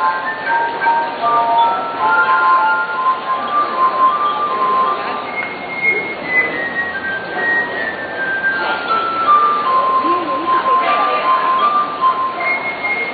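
Glass harp: rows of wine glasses played by rubbing their rims, giving held, pure ringing notes in a slow melody, often two notes sounding together.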